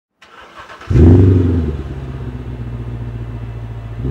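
Mercedes-Benz W216 CL500 V8 with a MEC Design 'Earthquake' sport exhaust being started. The starter cranks briefly and the engine catches just under a second in with a loud flare of revs, then settles to a steady, deep idle.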